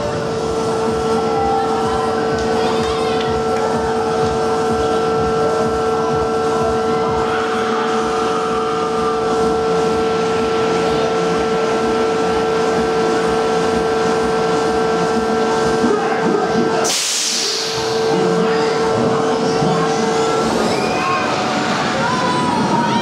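Roller coaster station machinery: a steady hum holding a few fixed pitches, broken about seventeen seconds in by a short, loud hiss of released air.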